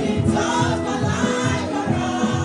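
A gospel choir singing together through microphones, several voices on sustained notes over a steady beat.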